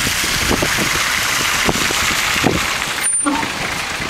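A 1984 Fiat Ducato diesel van passing close by and driving away, its tyres hissing on wet asphalt over the fading engine note. The sound briefly breaks off about three seconds in.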